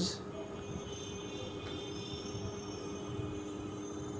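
Steady low background hum with a few faint constant tones underneath, and no distinct event.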